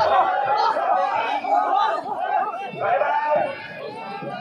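A crowd of men shouting and calling out together, many voices overlapping in a loud hubbub that eases slightly near the end.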